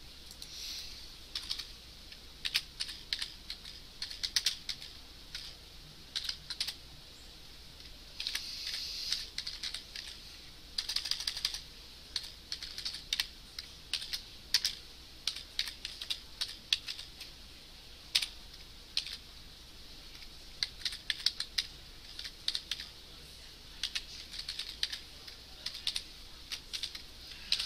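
Computer keyboard being typed on in irregular bursts of keystrokes with short pauses between them.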